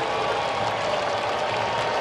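Ballpark crowd cheering and applauding a home run, a steady roar of many voices and clapping.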